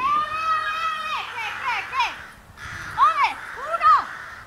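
A child's high-pitched calls. One long held call comes first, then several short cries that rise and fall in pitch.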